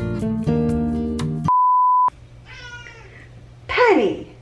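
Music ends about a third of the way in, followed by a short steady beep. Then a cat meows twice, the second meow louder and falling in pitch.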